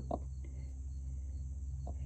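A broody hen's faint, short low clucks, one just after the start and one near the end, over a steady low hum and a steady high buzz.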